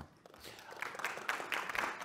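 Audience applause in a hall, starting faintly about half a second in and building.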